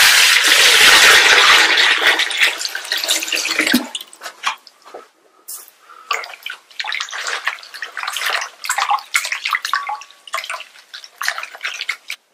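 Water poured in a steady stream into a glazed earthenware bowl for about four seconds, then hands swishing and rubbing a bunch of greens in the water, with short, irregular splashes.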